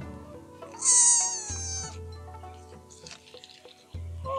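A sika deer's high-pitched call, about a second long and falling slightly in pitch, about a second in, over background music.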